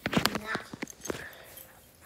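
A quick, irregular series of sharp clicks in the first second or so, then fainter sound.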